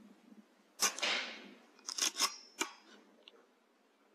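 A single shot from a Weihrauch HW100 .22 pre-charged air rifle, a sharp crack about a second in with a short noisy tail. About two seconds in comes a quick run of four clicks with a faint metallic ring, typical of the rifle's action being cycled to chamber the next pellet.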